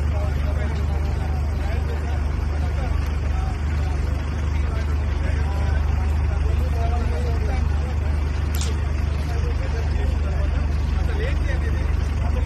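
A steady low rumble with several people talking faintly in the background.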